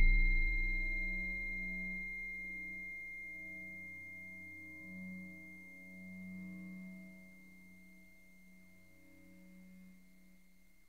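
The last ringing tones of a free improvisation on snare drum with crotale and electronics: a struck sound's long ring, a steady high tone over a low wavering hum, dying away with a couple of small swells to silence about seven seconds in.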